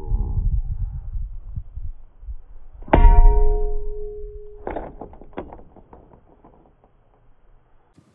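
A baseball bat swung down onto a small piece of glass resting on an overturned plastic boat hull: a loud clang about three seconds in that rings on for about a second and a half, followed by a smaller knock and a few light ticks.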